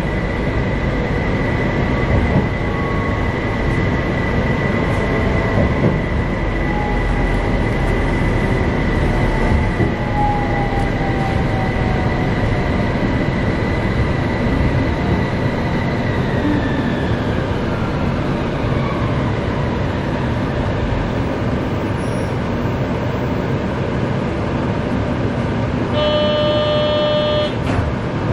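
Utsunomiya Light Rail HU300 tram running, with a steady rumble of wheels on rail and a high electric whine from its traction motors. Over the middle of the stretch the whine falls in pitch as the tram brakes for its stop. Near the end a short electronic tone sounds for about a second and a half.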